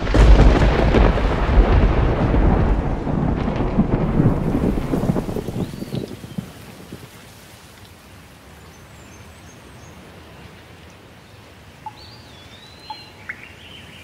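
A thunderstorm: loud rolling thunder starts at once and dies away over about six seconds, leaving steady rain. A few faint bird chirps come through the rain, once about six seconds in and again near the end.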